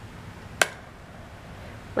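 A single sharp click about half a second in, as the plastic arrow of a children's board-game spinner is flicked, over quiet room tone.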